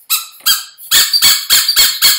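Rubber squeaky dog toy squeezed over and over: two squeaks, then a fast run of sharp, high-pitched squeaks at about five a second.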